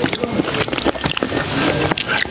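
Close-miked wooden spoon scooping through tomato-and-egg soup in a glass bowl, with a dense run of small clicks and wet squelches.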